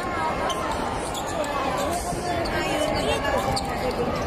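Basketball bouncing on a hardwood court during play, with voices and crowd chatter in a large arena.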